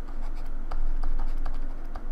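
Stylus writing on a drawing tablet: light scratches and small taps as letters are written, over a steady low electrical hum.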